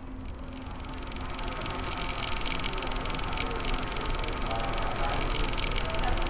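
A static-like hiss with fine crackling clicks and a low hum, swelling steadily louder.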